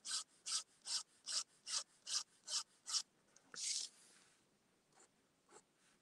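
Pen scratching on paper in quick, even hatching strokes, about two and a half strokes a second for three seconds, then one longer stroke and a few faint light taps.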